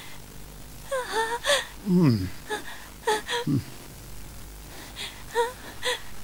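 Several short, separate cries and exclamations from a person's voice, some sliding steeply down in pitch, with quiet gaps between them.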